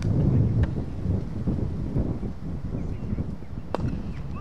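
Wind buffeting the microphone as a steady low rumble. Near the end comes a single sharp crack of a cricket bat striking the ball.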